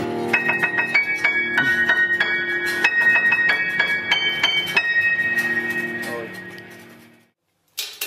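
Keyboard music: a high melody of short notes, a few a second, over held low chords, fading out about six to seven seconds in.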